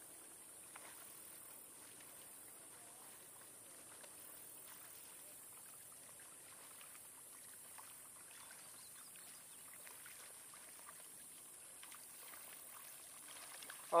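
Faint water sounds of kayak paddle strokes: soft dips and trickles in calm water, over a steady high hiss.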